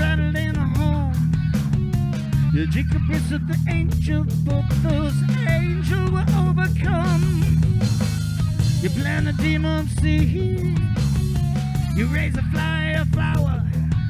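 Live rock band playing a passage without vocals: electric guitars and bass guitar over a steady beat on an electronic drum kit, with a wavering lead melody line above.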